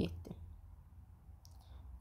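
A few faint clicks of a stylus tip tapping a tablet's glass screen while handwriting, over a steady low hum.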